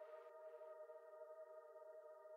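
Faint sustained synth chord holding steady, the ringing-out tail at the very end of an uplifting trance track; a light upper hiss fades away in the first half-second.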